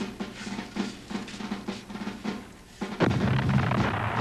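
Soundtrack drum roll for about three seconds, then a loud explosion about three seconds in that rumbles on.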